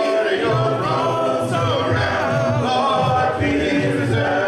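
Three men singing a gospel song a cappella in harmony into microphones, with no instruments.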